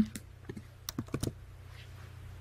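Computer keyboard keys clicking about seven times in a quick, uneven run over the first second or so, as code is pasted into an editor.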